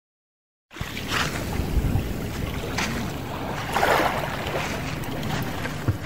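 Dead silence, then from under a second in the rumble and rustle of a hand-held phone's microphone, with three short hissing bursts over the next few seconds.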